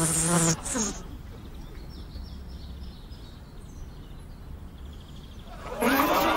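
A fly buzzing faintly and intermittently. It follows a short grunting vocal sound that slides down in pitch about half a second in, and a louder vocal sound cuts in just before the end.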